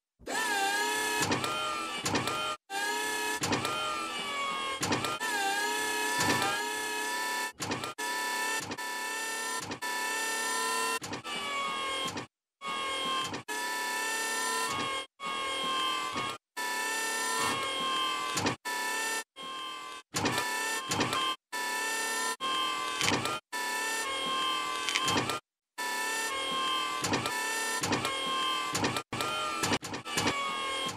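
Cartoon sound effect of a robotic arm's electric motors whirring in short runs of a second or two, separated by brief gaps, the pitch bending at the start of many runs.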